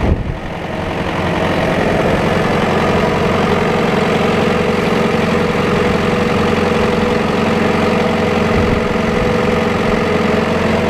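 Farm tractor's diesel engine running steadily at low speed as the tractor pulls up behind a truck. The sound dips briefly in the first second, then holds even.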